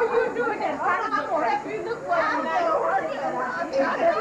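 Indistinct chatter: several people talking over one another in a room, with no single voice standing out.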